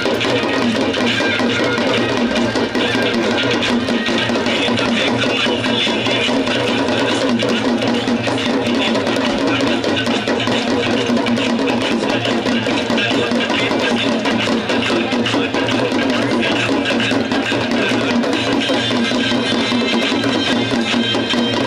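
Hindu aarti devotional music during the Ganga Aarti: voices singing over steady drumming and percussion, dense and continuous.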